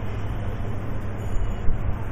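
Steady background noise with a low, unchanging hum under an even hiss, and no speech.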